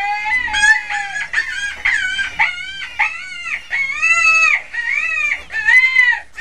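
A rapid series of shrill animal calls, each a short cry that rises and falls in pitch, overlapping one another.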